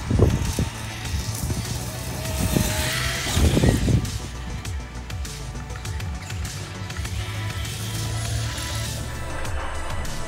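Background music with the electric motor of a Traxxas X-Maxx 8S RC monster truck whining as it drives across grass, its pitch gliding for a moment about three seconds in. Louder low rumbles come right at the start and again about four seconds in.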